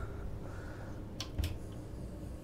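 Quiet room tone inside a wood-panelled cabin, broken by two sharp clicks and a soft thump a little over a second in.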